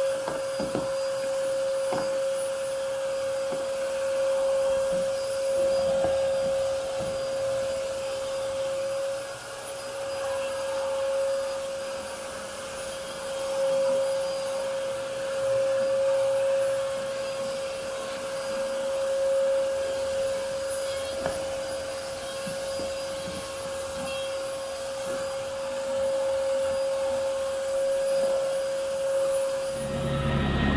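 Vacuum cleaner running with a steady high motor whine as its hose and crevice tool are worked along carpet edges, with light scraping and rubbing of the tool against carpet and floor.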